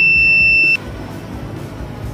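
Buzzer of a homemade clothespin door alarm sounding one steady high-pitched tone, which cuts off suddenly under a second in as the alarm is reset. Quieter background music follows.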